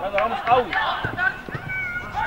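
Several voices shouting over one another during a football scramble in front of goal, with a sharp knock of the ball being kicked about halfway through and one long high call near the end.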